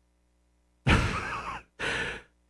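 A person's breath: two noisy, sigh-like exhales, the first starting a little under a second in and the second shorter.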